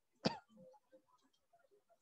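A person clearing their throat once, briefly, about a quarter second in.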